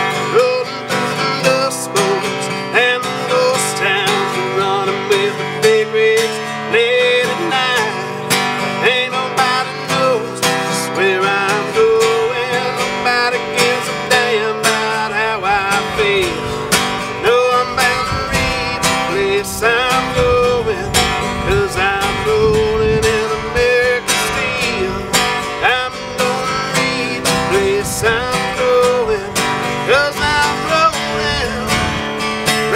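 Instrumental break in a country song: acoustic guitar strumming under a lead melody line that bends and wavers in pitch, with no singing. Deeper bass notes come in about twelve seconds in and grow heavier from about eighteen seconds.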